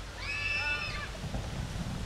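A high-pitched human scream, held for just under a second starting a moment in, from riders on a water-ride boat coming down the channel. A steady low wash of background sound runs beneath it.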